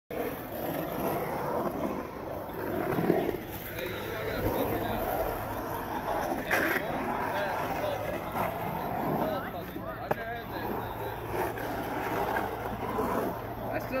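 Skateboard wheels rolling and carving across a concrete bowl as a continuous rolling rumble, with a couple of sharp knocks from the board, over voices of onlookers in the background.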